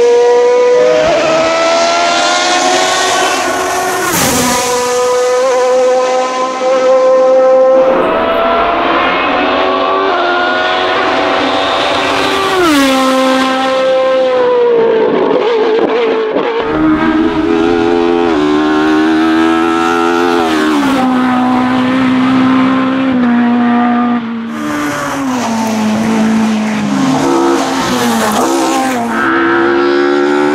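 Hill climb race cars accelerating hard past the roadside, engines revving high and climbing through the gears: the pitch rises, then drops sharply at each upshift, several times over. The sound changes abruptly a few times as one car gives way to another.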